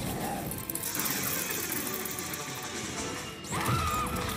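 Fantasy-battle sound effects from a TV soundtrack: a sustained crashing, rushing blast of magic energy over a music score.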